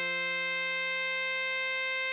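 A single long melody note, written D6 for tenor sax, held perfectly steady without vibrato in an electronic saxophone sound, over a sustained F major chord in a keyboard sound.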